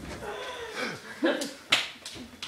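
Footsteps of a person running across a wooden floor: two sharp footfalls about a third of a second apart in the second half, the second the louder, with faint voices in the first second.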